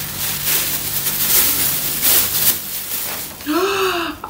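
Plastic bag rustling and crinkling unevenly as it is handled and pulled open by hand.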